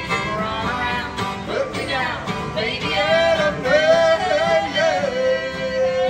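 Live acoustic fiddle and guitar duo playing a country-bluegrass song, with a man singing. A note is held steady from about five seconds in.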